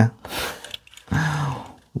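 A man's breathy exhale, then a short murmured vocal sound, like a drawn-out 'mm', that falls in pitch at the end.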